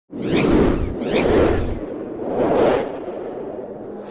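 Three whoosh sound effects, one after another, each swelling and dying away, with a tail that fades out near the end.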